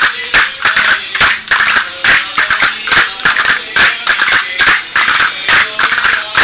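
Murcian jota music playing, with sharp clicks from the dancers' castanets and steps in a quick rhythm over it, several strokes a second.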